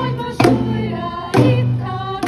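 A children's school choir singing together in unison, with boomwhacker tubes struck so that new notes start about once a second.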